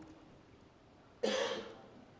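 A near-silent pause, then a single short cough a little over a second in, fading out within about half a second.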